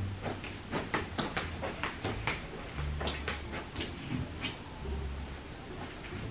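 Scattered small clicks and a few soft low thuds of a person moving about and walking on carpet.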